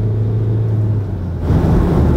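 Skoda Octavia A7 diesel car driving: a steady low engine drone that turns into a rougher rumble of engine and road noise about a second and a half in.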